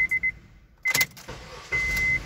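A Honda car's idling engine is switched off, leaving a short quiet gap. About a second in there is a sharp click of the ignition key. Near the end a high steady beep sounds and the starter begins cranking the engine again. This is a quick restart to test how strongly it now starts after corrosion was cleaned from the battery terminal.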